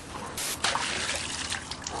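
Creek water splashing and trickling as it is scooped up to drink, growing louder about half a second in.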